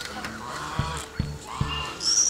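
Domestic geese honking, a couple of calls, over background music with a steady beat.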